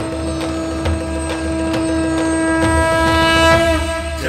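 Film-trailer music: one long, steady horn-like note held over a low rumble and a regular beat of about three knocks a second. Just before the end the note dips in pitch and cuts off.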